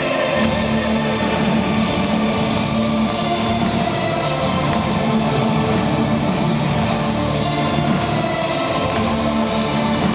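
Symphonic metal band playing live at full volume: distorted electric guitar, drum kit and keyboards in a steady, dense mix, heard from within the crowd in the hall.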